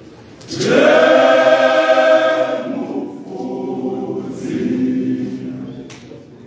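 Men's choir singing: a loud held chord comes in about half a second in, followed by softer singing that fades near the end.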